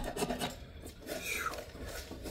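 Hand scraping and rubbing strokes on a hard surface, rasping sweeps during tedious manual work.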